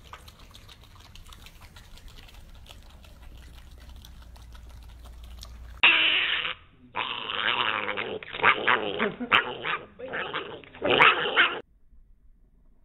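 A piglet making loud, harsh grunts and squeals in several bursts from about halfway in, stopping shortly before the end. Before that there are only faint clicks and a low hum.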